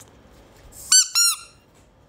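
Yellow rubber duck toy squeezed twice, giving two short squeaks in quick succession about a second in.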